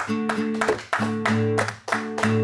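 Guitar strummed in a steady rhythm, about four strokes a second, with a chord change about halfway through.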